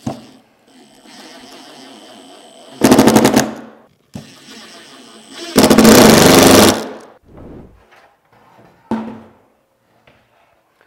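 Makita cordless impact driver driving screws through plastic clips into a drawer front. The motor runs softly at low speed, then hammers loudly in rapid blows for about a second as a screw seats, around three seconds in. It does this again for longer about six seconds in, and there is a short knock near the end.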